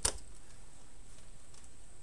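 A single sharp click as an AA battery is pressed into a plastic battery holder.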